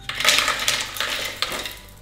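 Dried mulberries poured from a small bowl into the empty clear bowl of a food processor, rattling down in a dense run of small clicks that fades just before the end.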